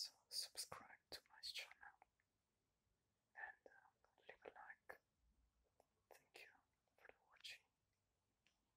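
A man whispering softly close to the microphone, in three short phrases with sharp hissing s-sounds and a few mouth clicks.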